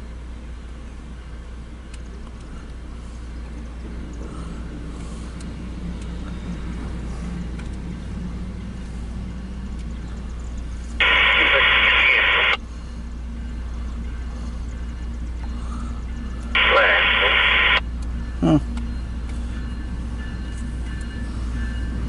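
Two short bursts from a railroad scanner radio cut in and out abruptly, one about 11 seconds in lasting about a second and a half, the other about 17 seconds in, over a steady low rumble.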